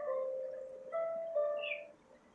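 Soft background music under a sermon pause: slow, held melodic notes, with new notes coming in about a second in, fading away near the end.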